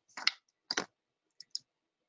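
A few clicks of a computer mouse: two sharper clicks in the first second, then two faint ones close together.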